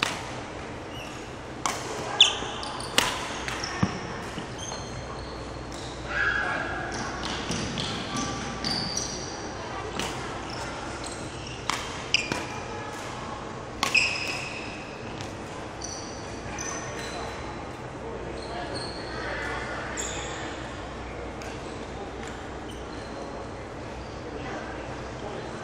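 Badminton rackets striking a shuttlecock in a rally, sharp cracks about a second apart, in two runs early and around the middle. Sneakers squeak on the wooden court between the hits, echoing in a large sports hall.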